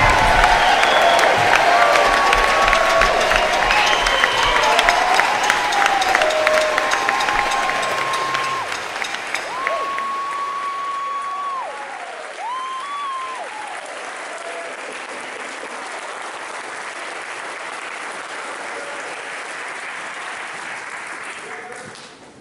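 Audience applauding and cheering after a live jazz number. The clapping is loudest over the first several seconds, then thins to a steadier, quieter patter, with a few drawn-out calls from the crowd about ten to thirteen seconds in.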